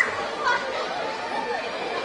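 Indistinct chatter of voices in the background, with no clear words.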